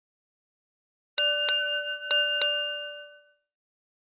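Small brass bell rung four times in two quick pairs, each strike leaving a ringing tone that dies away within about a second.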